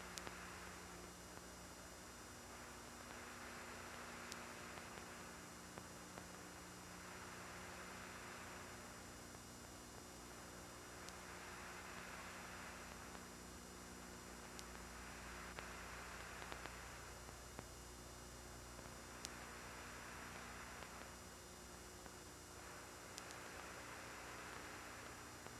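Faint hiss and static on an open communications line over a steady electrical hum, waiting for the spacecraft signal to come back. The hiss swells and fades about every four seconds, with a few faint clicks.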